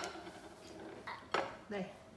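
Metal serving tongs clinking against ceramic plates: a sharp clink dying away at the very start and another, the loudest, about a second and a half in.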